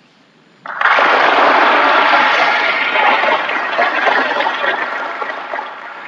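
Audience applause as a show begins, starting abruptly about a second in and slowly fading away near the end.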